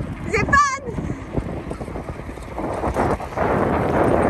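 Wind buffeting the microphone and bicycle tyres rolling on a tarmac path during a ride, a steady noise that grows louder about two and a half seconds in. A brief high, wavering voice sounds just after the start.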